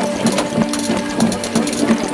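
Rhythmic drumming, a steady beat of about four strikes a second, over sustained droning tones and a quick high ticking pattern.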